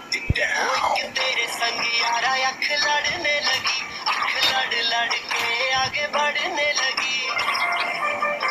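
A Hindi pop song with singing plays for dancing. It opens with a short thump and a falling sweep just after the start, then the song runs on steadily.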